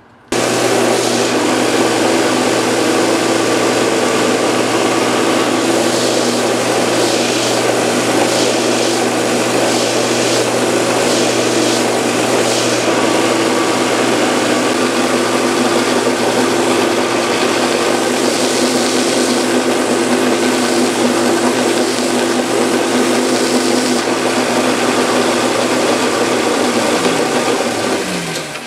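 Bench belt sander running steadily under its motor, with a workpiece pressed against the abrasive belt in passes that brighten the sound at intervals. The motor winds down near the end.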